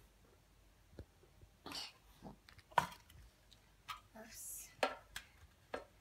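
Scattered small clicks and taps of small objects being handled at a wooden box, the loudest click nearly three seconds in, with a few short soft breathy hisses between them.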